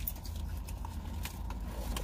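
Steady low rumble of an idling car heard from inside the cabin, with scattered small clicks and crinkles from eating and handling food.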